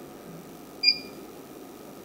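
A single short electronic beep about a second in, over faint background hiss.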